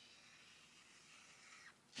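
Near silence: a faint, steady hiss of a felt-tip marker drawing on a paper flip chart.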